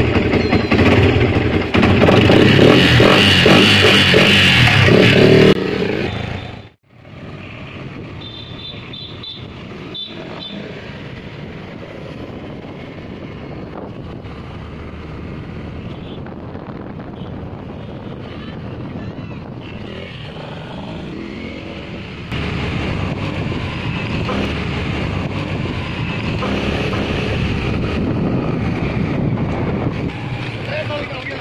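Sport motorcycle engine running loud for the first six seconds, then cut off abruptly; a quieter, steady engine sound follows while riding and grows louder again about two-thirds of the way through.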